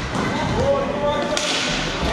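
Hockey rink play sounds: a sharp slap about one and a half seconds in, a stick striking the puck, over a steady din of skating and players calling.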